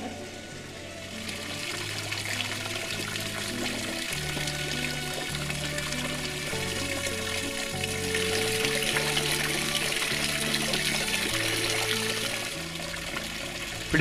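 Water splashing and bubbling from a garden fountain jet into a pond, a steady rush that swells in the middle. Calm background music with long, slow-changing low notes plays under it.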